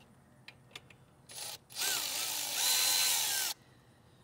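Power drill with a 5 mm socket spinning a small stud out of a motorcycle footpeg. After a couple of light clicks there is a short burst of the drill, then a steady run of about two seconds with a motor whine that stops suddenly.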